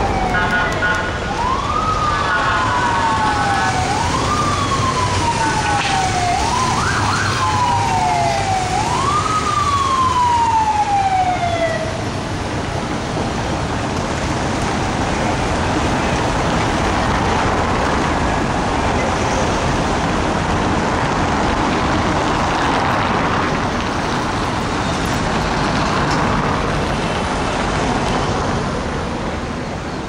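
Police vehicle siren wailing in about five sweeps, each a quick rise and a slower fall, stopping about twelve seconds in; street traffic noise follows.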